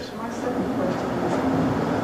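Indistinct, off-microphone voices over a steady rumble of room noise.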